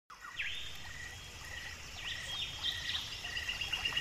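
Wild birds calling in woodland: several swooping whistled notes and, from about three seconds in, a fast pulsed trill, over a low background rumble.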